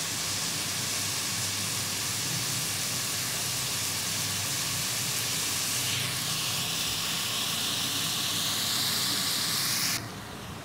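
Sliced onions frying in cooking oil in an aluminium pot: a steady sizzle that turns sharper and brighter about six seconds in.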